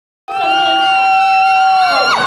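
One person's high-pitched cheering scream from the audience, held on one pitch and dropping off near the end, over crowd noise. It starts suddenly about a quarter second in.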